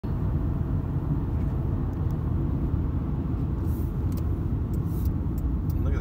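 A moving vehicle heard from inside its cabin: a steady low rumble of engine and tyre noise at cruising speed.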